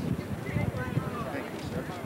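Indistinct talking of several people, with irregular low thuds and rumble underneath.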